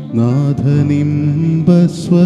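Man singing a Malayalam Christian devotional song into a microphone over electronic keyboard accompaniment. He holds one long note, then starts a new phrase near the end.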